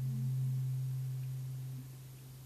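The tail of a single low sustained instrument note, ringing as a plain pure tone and fading steadily.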